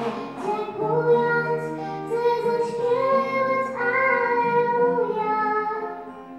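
A young girl singing into a microphone in long held notes, accompanied by an acoustic guitar.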